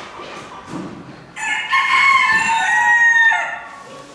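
A rooster crowing once: a single loud crow of about two seconds, starting just over a second in.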